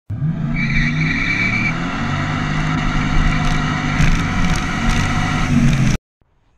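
Motor vehicle engine running steadily while driving along a road, with a few sharp knocks partway through.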